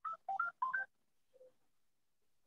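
Three quick telephone keypad tones in the first second, each beep two tones sounding together.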